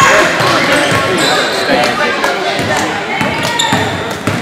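Basketball dribbled on a hardwood gym floor, with sneakers squeaking and spectators' voices and calls filling a large gym.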